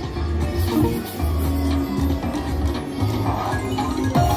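Prosperity Link video slot machine playing its game music and win jingles while the reels spin and small wins register: a run of held tones and short melodic notes over a recurring low hum.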